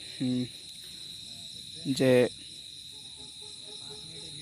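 Crickets chirring in a steady, unbroken high-pitched trill.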